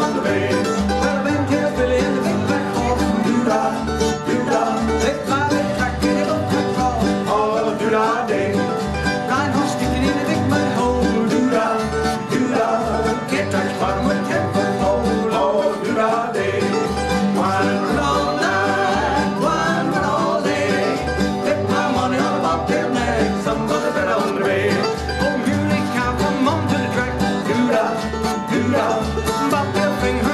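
Old-time string band music: banjo and acoustic guitar picking over a steady, evenly pulsing bass beat.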